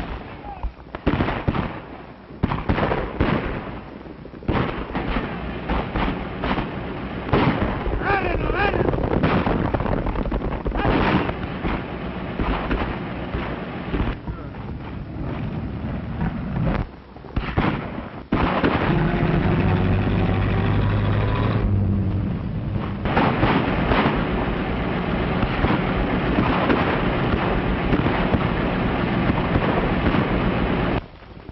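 Old film-soundtrack action sequence: repeated gunshots and explosive bangs mixed with shouting voices. About two-thirds of the way through it gives way to a dense, continuous din.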